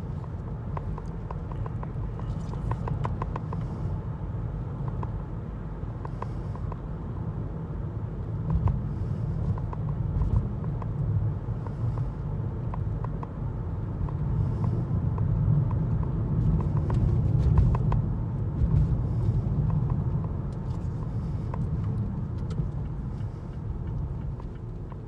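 Car road noise heard inside the cabin while driving at speed: a steady low rumble of tyres and engine, a little louder in the middle stretch, with scattered faint ticks.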